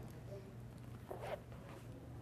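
Faint rustling of paper as a Bible's pages are handled and turned, over a low steady hum.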